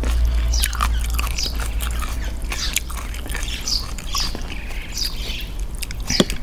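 A metal spoon and fork stir and lift instant noodles in a bowl of wet salad dressing, giving irregular wet clicks and scrapes of utensils on the bowl. Short bird chirps sound in the background.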